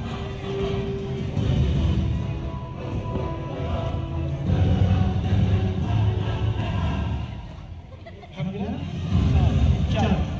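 Background music with heavy bass and voices mixed in; it drops away briefly about eight seconds in, then returns.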